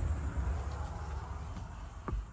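Low, steady background rumble with a faint hiss, slowly fading, and no distinct events.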